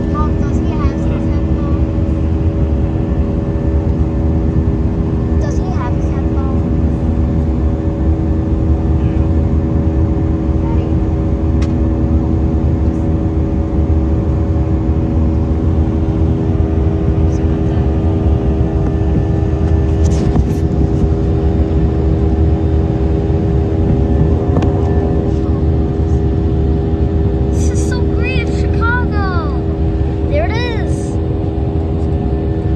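Airbus A319 passenger cabin during the climb after takeoff: the jet engines and airflow make a loud, steady low rumble with several constant hums. Near the end a few short higher sounds rise and fall over it.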